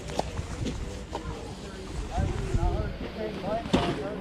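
Indistinct voices talking over low wind rumble on the microphone, with a few sharp knocks, the loudest near the end.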